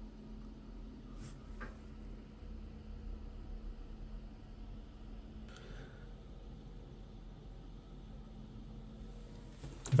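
Quiet room tone with a low steady hum, a couple of faint clicks about a second in and a soft faint rustle around the middle.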